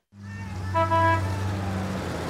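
Street ambience fading in over a steady low rumble, with a car horn honking briefly about a second in.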